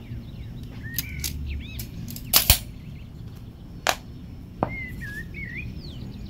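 Several sharp clicks and taps of small metal tools being handled: a steel nail, a tape measure and combination pliers. The loudest is a quick double click about two and a half seconds in. Birds chirp a few times against a low steady background noise.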